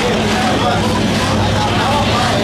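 Drag-racing car engines running steadily at the start line, a constant low rumble under voices.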